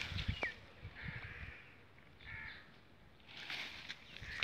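A few faint bird calls, about one every second, with a low rustle or knock near the start.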